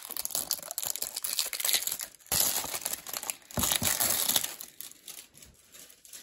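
Plastic shrink-wrap seal being torn and crinkled off a cardboard box, a dense crinkling with two brief pauses that dies down after about four and a half seconds.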